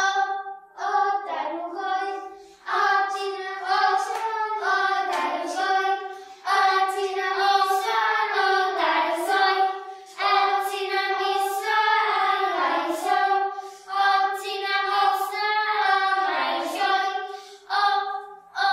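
A small children's choir singing together in unison, in sustained phrases separated by short pauses for breath.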